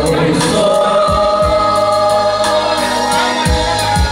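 A man singing a slow song through a handheld microphone and loudspeaker over backing music with bass and drums, holding one long note through the first half.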